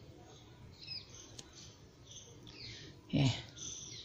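Faint, short bird chirps in the background, with a light click about a second and a half in. A single short spoken word comes near the end.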